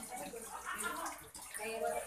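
Faint speech in the background, over a light noisy hiss.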